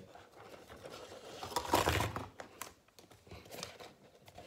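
Cardboard gift box being handled and opened by hand: rustling and scraping with small clicks and knocks, loudest in a burst about halfway through.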